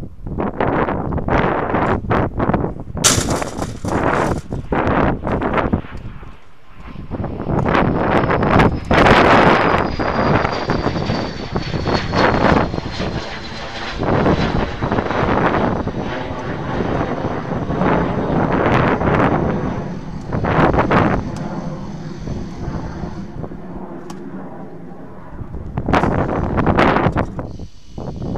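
A fixed-wing aircraft passing overhead, its engine noise swelling and fading with a thin whine that falls slowly in pitch. Wind buffets the microphone throughout, in irregular gusts.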